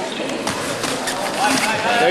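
Crowd of spectators in a gymnasium, a continuous din of talking and calling out with a few voices rising above it.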